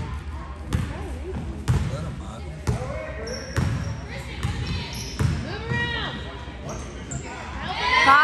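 A basketball being dribbled on a hardwood gym floor, about one bounce a second, with people's voices calling out and getting louder near the end.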